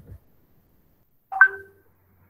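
A short electronic notification chime about one and a half seconds in: a few steady pitches held for under half a second.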